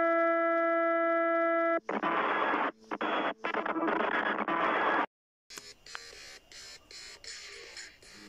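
A loud electronic buzz-tone held steady for about two seconds, then harsh, distorted static-like noise in choppy bursts for about three seconds that cuts off suddenly. After a short silence, a much quieter stretch with faint clicks follows.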